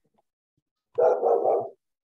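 A dog barking, a quick run of about three barks about a second in, heard through video-call audio.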